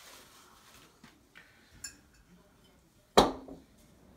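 Glass bottles and dishes being handled on a counter: a few faint clinks, then one louder knock about three seconds in.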